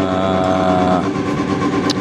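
A steady mechanical hum, like an engine running, with a held even-pitched drone over it for the first second that cuts off abruptly, and one short light click just before the end.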